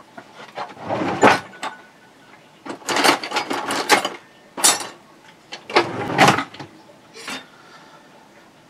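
A workbench drawer full of hand tools pulled open and rummaged through: tools clattering and knocking against each other in several short bursts.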